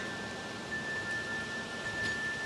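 Wind chimes ringing in the breeze, two held tones hanging over a steady hiss, the higher one sounding louder about two-thirds of a second in.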